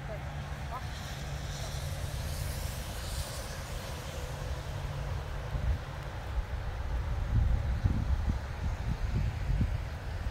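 Wind buffeting the microphone: a low rumble that turns gustier in the second half.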